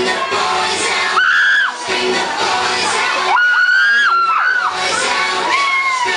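High-pitched screams and cheers from a young audience over loud pop dance music: one long shriek about a second in, several overlapping shrieks around the middle, and a falling shout near the end.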